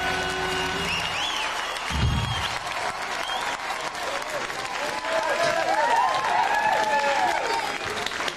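Studio audience applauding and cheering as a live band's song ends. The band's last held chord dies away within the first second, a low thump comes about two seconds in, and voices call out over the clapping near the end.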